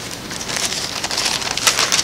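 Thin Bible pages rustling as they are turned: a run of short papery rustles, loudest near the end.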